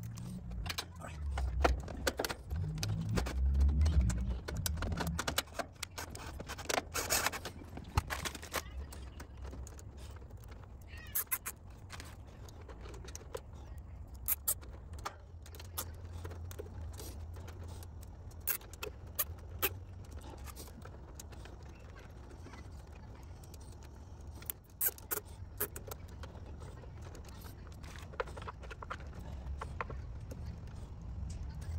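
Hands working on the wiring inside an AC condenser's control panel: scattered small clicks, rattles and rustles of wires, terminals and plastic cable ties being handled, over a steady low rumble.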